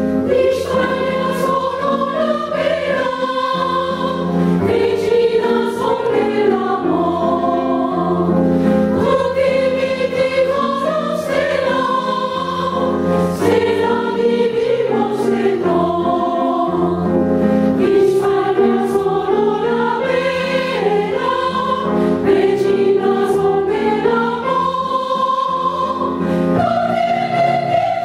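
Women's choir singing a song in Chinese, in sustained melodic phrases.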